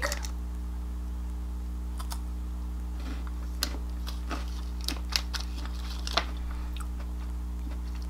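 A person biting into and chewing a Kit Kat wafer bar: a few soft, scattered crunches and mouth clicks, over a steady low hum.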